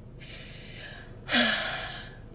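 A woman's audible breath: an intake of breath, then a louder sigh about a second and a half in that fades away.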